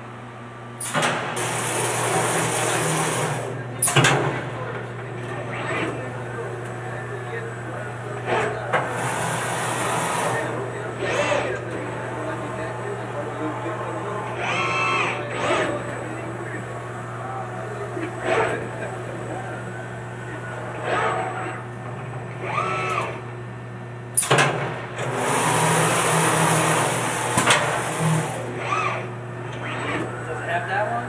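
Robotic paint spray gun hissing in three bursts of a second or more each, over a steady low hum from the spray booth equipment, with a couple of sharp knocks.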